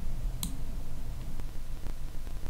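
Computer mouse clicking: one sharp click about half a second in, then a couple of fainter clicks.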